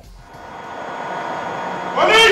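A rushing noise that builds steadily louder over about two seconds.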